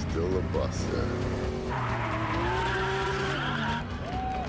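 Racing car engines running hard, with a long tyre skid starting a little under two seconds in and lasting about two seconds.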